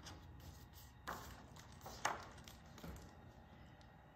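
Pages of a hardcover picture book being turned by hand: a few faint paper rustles and light taps, about one, two and three seconds in.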